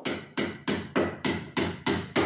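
Hammer striking wood in a fast, steady rhythm, about four blows a second.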